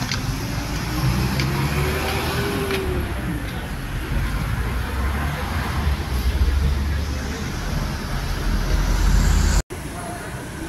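Road traffic on a busy city street: car engines running with a steady low rumble and a slow rise and fall in engine pitch in the first few seconds. The sound cuts off abruptly near the end.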